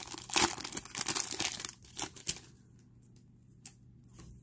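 A trading-card pack wrapper being torn open and crinkled for just under two seconds, followed by a few soft clicks as the cards are handled.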